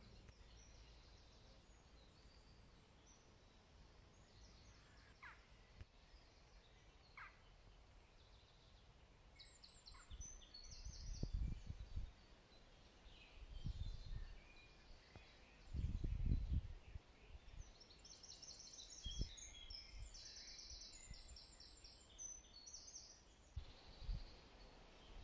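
Small woodland birds singing, with many short, high chirps and rapid trills that grow busier toward the end. Several low rumbles of about a second each break in during the second half.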